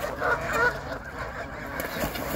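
Canada geese honking as they fight, a run of short honks in the first second, then quieter.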